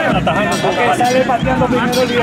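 Several people talking over one another at close range, the overlapping chatter of footballers and referees gathered on the pitch.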